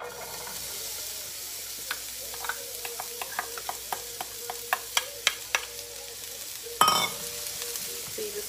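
Diced onion sautéing in an oiled pan over medium heat: a steady sizzle, with a utensil clicking against the pan as the onion is stirred from about two seconds in, and one louder knock near the end.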